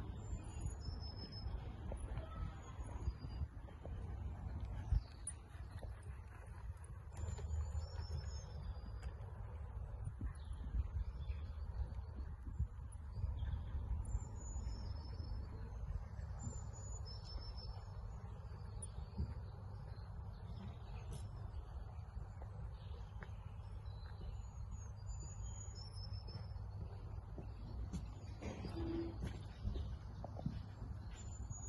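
Wild birds singing: many short, high whistled notes repeating throughout, over a steady low rumble.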